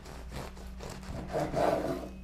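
Bread knife sawing through a freshly baked braided loaf on a wooden cutting board: repeated rasping back-and-forth strokes through the crust, loudest near the end as the cut goes through.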